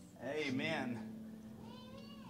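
A person's voice: a short, wavering, high-pitched vocal sound with no clear words, trailing into a held lower tone.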